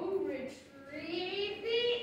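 A child's voice in a drawn-out, sing-song line, its pitch sliding slowly upward after a short break about half a second in.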